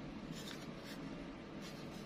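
Fingers rubbing and shifting a black plastic Zippo lighter gift case, a few faint scratchy rustles over a low steady room hum.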